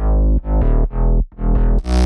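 Layered synthesizer bass, a sub bass under an FM bass, playing a house bassline in pulses about twice a second. Near the end it slides down in pitch, a pitch bend written into the MIDI.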